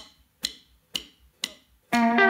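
Count-in for a rock song: sharp clicks evenly spaced about half a second apart over near silence, then the band comes in with electric guitar and bass on the beat right at the end.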